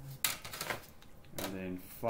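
Sharp taps and clicks of drawing instruments against paper on a drawing board, several in the first second. A short spoken sound follows about a second and a half in.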